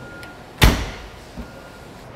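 A fire engine's side compartment door swung shut, one loud clunk a little over half a second in with a short ring after, then a faint knock.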